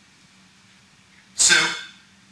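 Quiet room tone with a faint steady low hum, then about one and a half seconds in a man's voice says a single short word, "So," with a sharp, breathy start.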